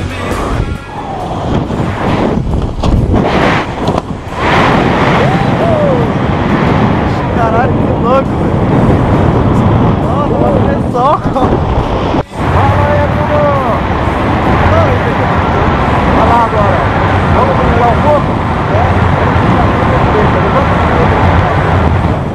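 Loud wind rushing over the camera microphone under an open parachute canopy, with voices shouting over it; the noise drops out for a moment about halfway.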